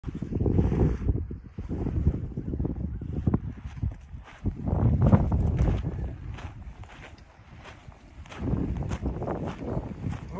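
Wind buffeting the microphone in uneven gusts, easing for a moment about two-thirds of the way in, with the light crunch of footsteps on sandy, gravelly ground.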